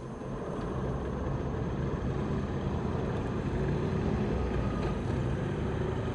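Steady low rumble of a vehicle running, swelling over the first second and then holding level.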